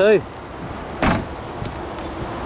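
A car's rear passenger door being shut: a single solid thump about a second in.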